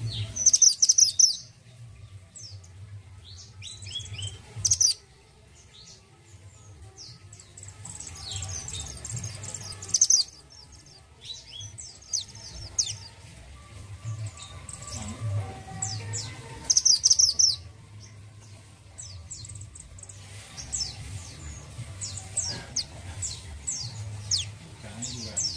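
Caged male mantenan gunung (minivet) calling in bursts of quick, high, falling chirps every few seconds, the loudest about a second in and near 5, 10 and 17 seconds, over a steady low hum.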